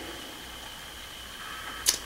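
Faint steady room noise with a thin, high, constant whine. A brief sharp hiss comes just before the end.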